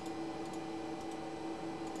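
A few faint computer mouse clicks over a steady room hum with one held tone.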